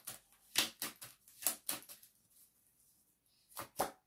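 Tarot cards being handled, making a series of sharp clicks and snaps: a few in the first two seconds, then two close together near the end as a card is brought down onto the spread.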